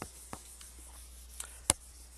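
Dry-erase eraser rubbing across a whiteboard, a faint scrubbing hiss, with one sharp click about three-quarters of the way through.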